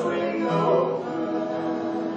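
A small group of voices singing a gospel song in harmony, holding long sustained notes.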